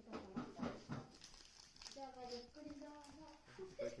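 People talking in a small room, including a higher-pitched voice in the second half, with a few light knocks early on.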